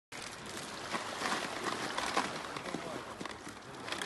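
Ice cubes being tipped from plastic bags into a plastic bucket: irregular clinks and knocks with plastic bag crinkling, over the wash of gentle surf.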